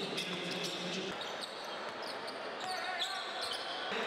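A basketball bouncing on a hardwood court, with voices echoing in the arena.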